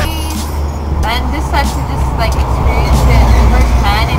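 Short vocal sounds from people, heard several times over a steady low rumble.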